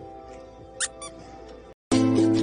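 Faint held background music with two short, high-pitched squeaks close together about a second in, the first sweeping upward; louder music starts just at the end.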